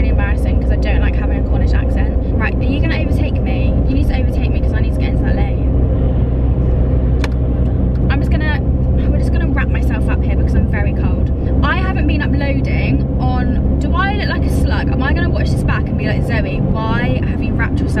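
Steady low rumble of a car's engine and tyres heard from inside the moving car's cabin, under a woman talking.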